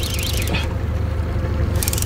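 Boat's outboard motor running steadily at trolling speed, heard as a low, even rumble.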